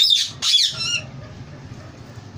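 Indian ringneck parakeet giving two loud, harsh squawks in the first second, the second one falling in pitch.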